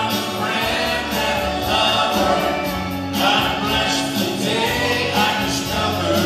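Live country band playing with singing: a male lead voice and female backing vocals in harmony over the band.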